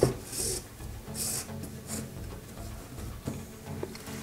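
Paracord rubbing as a strand on a metal lacing fid is drawn through the bracelet's weave: two or three short rasping swishes in the first two seconds, over soft background music.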